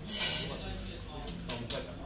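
Coffee-shop background of dishes and cutlery clinking, with people talking. A short burst of clatter about a quarter second in is the loudest sound, and two sharp clinks follow about a second and a half in.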